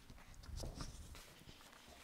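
Faint footsteps and shuffling in a quiet room, with a few low thumps about half a second to a second in and light clicks and rustles of papers being handled.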